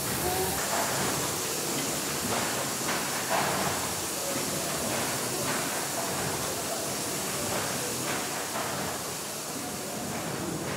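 Hawthorn Davey triple-expansion steam pumping engine running, with a steady hiss of steam and the noise of its working parts filling the engine hall.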